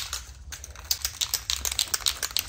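Aerosol spray paint can being shaken by hand, its mixing ball rattling inside in rapid, irregular clicks, several a second, to mix the paint before spraying.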